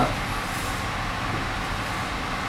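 Steady background noise, a low rumble with an even hiss over it, without any distinct events.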